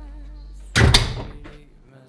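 A single loud bang about three-quarters of a second in, dying away over about half a second.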